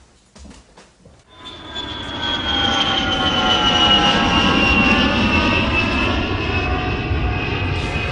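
A jet aircraft's engine noise swells in about a second in: a low rumble under a high whine that slowly falls in pitch as it goes.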